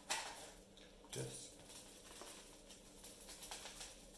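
Quiet handling noises of hobby materials on a workbench. There is a short rustling knock at the start and another soft knock about a second in, then faint scattered clicks, as a foil tray of sand is picked up.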